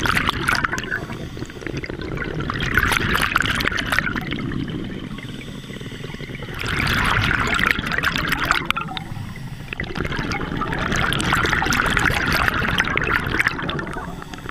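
Scuba diver breathing out through a regulator underwater: four surges of exhaled bubbles rushing past, about every four seconds, with quieter pauses between breaths.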